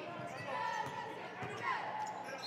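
Basketball dribbled on a hardwood court, a few bounces, under faint voices in the arena.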